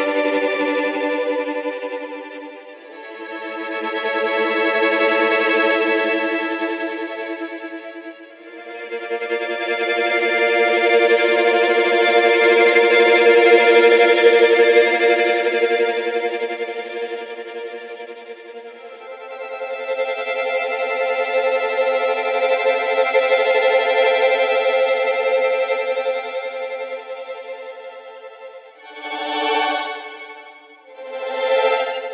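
Sampled solo violin playing tremolo chords from the 8Dio Studio Quartet Solo Violin library, in bowed arcs. The chords rise and fade in slow swells several seconds long, the chord changing with each new swell.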